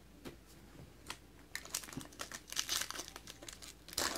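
Foil wrapper of a trading card pack crinkling as it is handled and torn open, the crackle thickening about a second and a half in after a few light taps.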